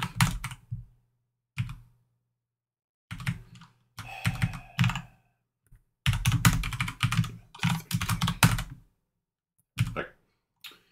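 Typing on a computer keyboard: several quick bursts of keystrokes separated by short pauses, the longest run of keys about six seconds in.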